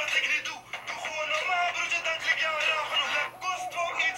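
Dutch rap song playing back, male rap vocals over the beat, sounding thin with almost no bass.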